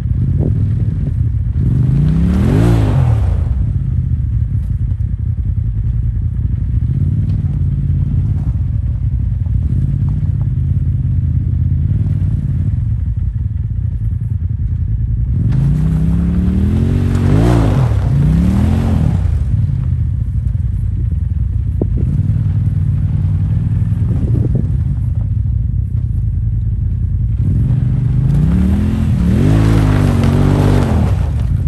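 Side-by-side UTV engine running throughout and revving up and back down in three surges as it strains on a tow strap to pull a stuck side-by-side out of snow and broken pond ice; the stuck machine does not come free.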